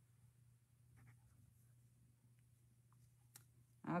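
Near silence: a faint steady hum with a few soft ticks of crocheting by hand, and one sharper click near the end.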